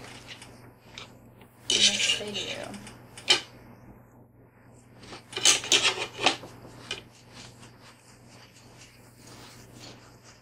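Eating at a table: metal forks clinking and scraping on a plate and crackers being bitten, in a few separate bursts, with one sharp click about three seconds in. A faint steady hum runs underneath.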